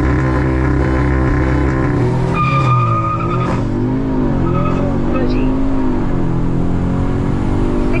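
Audi S3 8Y's turbocharged 2.0-litre four-cylinder pulling hard at full throttle, heard from inside the cabin over road and wind noise. The engine note holds steady, then dips and wavers about two and a half seconds in, with a brief high whine at the same moment.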